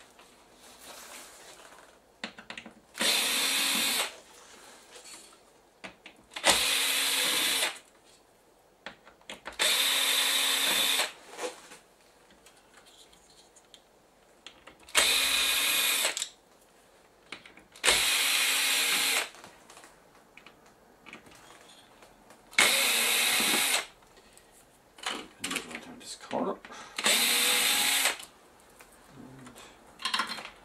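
Cordless drill-driver running in seven short bursts of about a second each, each at a steady whine, as screws are driven out of the plasma TV's power supply board. Light clicks and handling noises come between the bursts.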